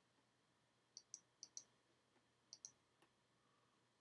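Faint, quick clicks of a computer mouse button: three pairs of clicks, the first about a second in and the last a little after two and a half seconds, then one fainter click.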